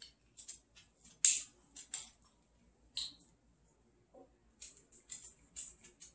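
Light clicks and taps of a maple syrup bottle being uncapped and handled over a glass jar, scattered and irregular, the sharpest a little over a second in.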